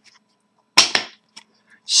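A short, sharp snap of a cardboard hockey trading card being flicked over in the hand while flipping through a pack, about a second in, followed by a faint click.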